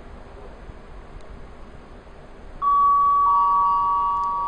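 Station public-address chime: two steady electronic tones, the second slightly lower and coming in about half a second after the first. They start suddenly about two and a half seconds in and ring on slowly fading, signalling that a spoken platform announcement follows. Before the chime there is only a low background rumble.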